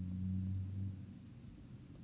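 A man's low, steady hum held at one pitch, a drawn-out 'mmm' filler while he writes, lasting about the first second. It then fades to faint room tone.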